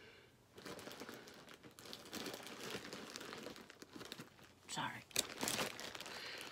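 Plastic zip-top bag crinkling and rustling as it is handled, in irregular bursts that start about half a second in and run on for several seconds.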